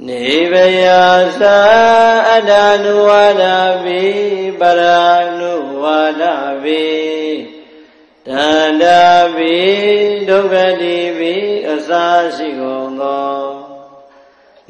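A male voice chanting Buddhist verses in long, melodic held notes that slide from one pitch to the next. There are two phrases with a short breath-pause between them about halfway through.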